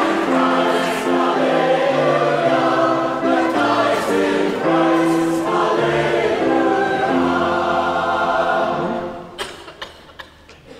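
Choir singing a slow refrain in held notes; the singing fades out about nine seconds in.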